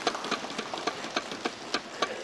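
Scattered applause from a small group of people clapping, irregular sharp claps several times a second.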